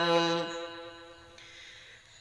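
A young man's voice chanting dhikr in Arabic, holding the last note of a phrase. About half a second in the note ends and its sound fades slowly away over the next second and a half.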